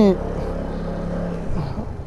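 Vespa 125 scooter's single-cylinder four-stroke engine running at a steady pitch while riding, mixed with wind and road noise.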